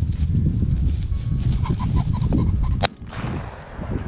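A rooster pheasant flushes with a few short cackling calls over steady low rumble, then a single shotgun shot cracks out about three seconds in.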